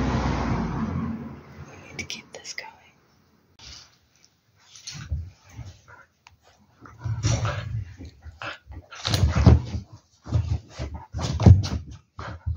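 A young Portuguese Podengo dog growling in play while biting and shaking a rope toy on a couch, in short irregular bursts that get louder toward the end. A brief rush of noise comes first.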